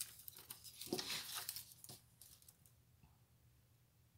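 Paper planner pages and sticker sheets rustling and sliding across a tabletop, with a few light ticks. It dies away after about two and a half seconds.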